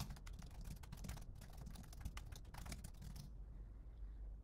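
Faint typing on a computer keyboard: a quick run of keystrokes entering a line of text, stopping a little before the end.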